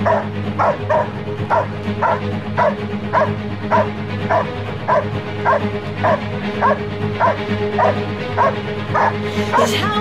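Belgian Malinois barking steadily at a helper's bite sleeve, about two barks a second, in protection-style defense work. Music with a steady low tone plays underneath.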